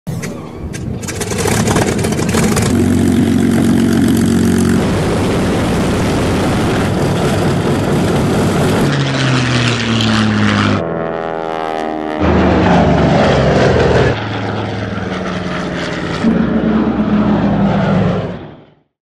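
Piston-engine propeller aircraft running in flight, heard in a string of short cut-together clips. The engine note drops in pitch as a plane passes, around ten seconds in and again a little later.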